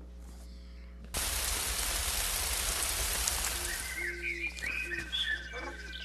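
Weather-segment intro sound effect: a sudden rush of rain-like hiss about a second in, fading out as bird chirps and whistles come in.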